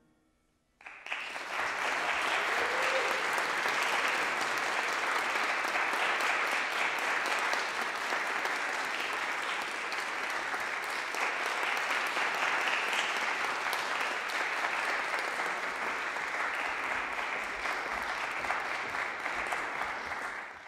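Audience applauding, breaking out suddenly about a second in, just after the last chord of the piece has died away, and carrying on steadily.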